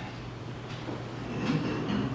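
Room tone with a steady low electrical hum; a soft breath or murmur rises near the end as someone is about to speak.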